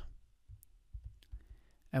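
A few faint, scattered clicks from working a computer's mouse and keyboard, with near quiet between them.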